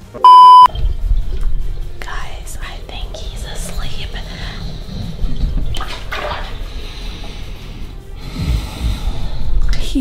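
A loud censor-style beep lasting under half a second near the start, then a man snoring, an uneven low rumble that swells near the end.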